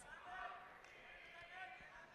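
Near silence in a pause between spoken sentences over a hall's sound system, with a faint voice in the background.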